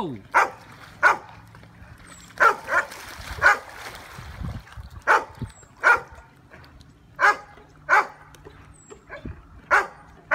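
Dogs barking in short single barks, about ten of them at uneven intervals of roughly one second, worked up by a person climbing onto a pool float.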